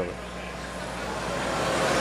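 Steady background noise with a faint low hum, growing slightly louder toward the end.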